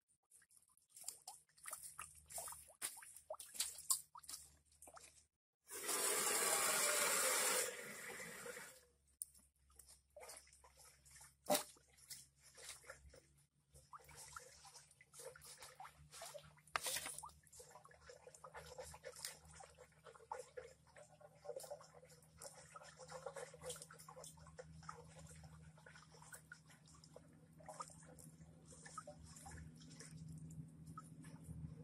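A knife cutting into a skinned animal carcass on a plastic basket, with scattered sharp clicks and scrapes from the blade and hands. About six seconds in, water pours or splashes for about three seconds, the loudest sound here, and a faint steady hum runs underneath.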